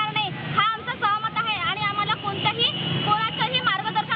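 A woman speaking close to a handheld microphone, over a steady low hum.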